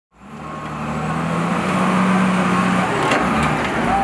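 Caterpillar 938G wheel loader's diesel engine running with a steady low drone, fading in at the very start.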